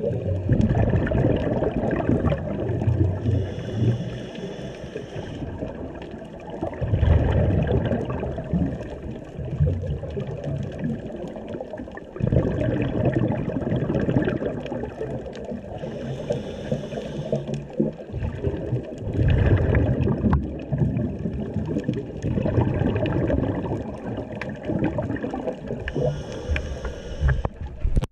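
Underwater sound of scuba diving: surging rumbles of exhaled bubbles and water moving past the camera housing, with a hissing regulator breath about every ten seconds (three in all).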